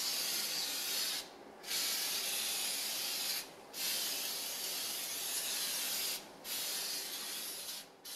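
Aerosol can of Easy-Off oven cleaner spraying onto a stainless steel stovetop in four long sprays with short pauses between them, a second coat on baked-on grease stains.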